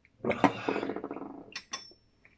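A man's drawn-out, throaty vocal sound of about a second, not words, followed by two short clicks near the end.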